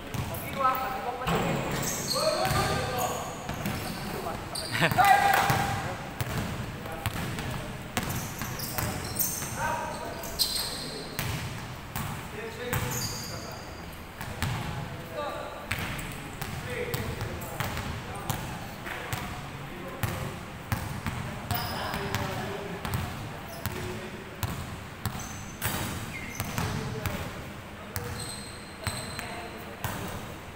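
Basketball game on a hardwood court: the ball bouncing as it is dribbled, repeated short knocks ringing in a large hall, with players shouting, loudest about five seconds in.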